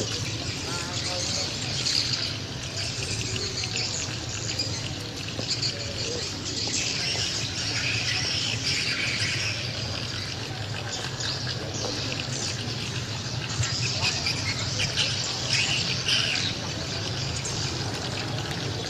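Many small birds chirping continuously over a low murmur of voices.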